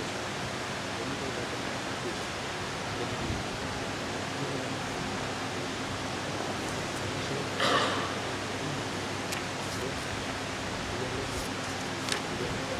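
Steady background hiss of room noise, with a brief noisy burst about eight seconds in.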